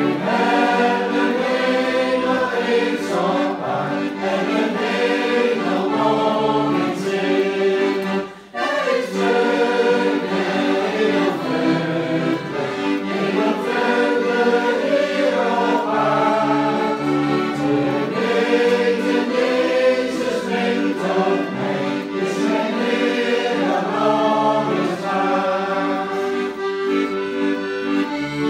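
A group of people singing a Dutch Christian hymn together, accompanied by a button accordion with held chords and a pulsing bass. The music breaks off briefly about eight seconds in, then carries on.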